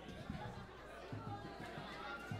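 Indistinct crowd chatter in a large room, with dull low thumps coming and going underneath.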